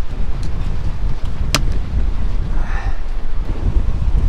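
Strong wind buffeting the microphone, a continuous low rumble, with one sharp click about a second and a half in.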